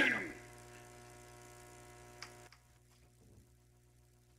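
The tail of a male rap vocal over the beat dies away in the first half second, leaving a faint steady electrical hum. There is a tiny click about two seconds in, and the hum drops slightly half a second later.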